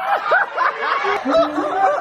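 People laughing: a quick run of short, high-pitched laughs.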